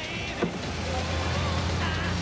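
A knock about half a second in, then a car engine running with a steady low hum as the yellow convertible moves off.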